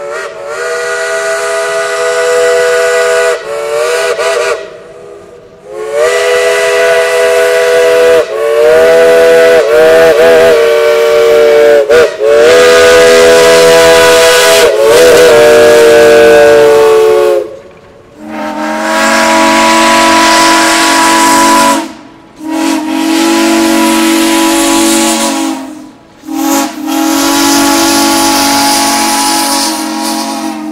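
Steam locomotive chime whistles blowing long blasts. The first whistle sounds several notes at once, with a couple of short breaks and its pitch wavering in the middle. About eighteen seconds in, a second, deeper-toned chime whistle takes over with three long blasts.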